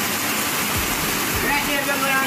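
Fast-flowing floodwater rushing over a road: a steady, even rush of water noise.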